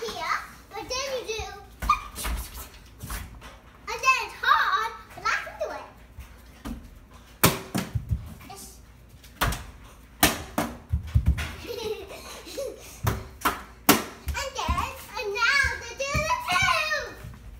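A plastic bottle tossed and landing on a hardwood floor, giving a dozen or so sharp knocks and clatters spread through, with a young child's voice between them.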